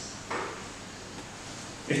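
A pause in a man's speech into a podium microphone: a brief soft noise about a third of a second in, then low room tone, and his voice resumes just before the end.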